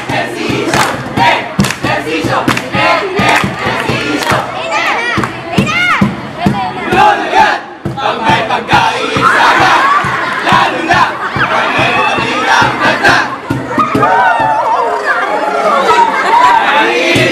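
A large crowd of voices shouting and cheering loudly and continuously, with whoops rising in pitch.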